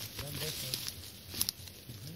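Men's voices talking while walking through forest undergrowth, with one sharp click about one and a half seconds in.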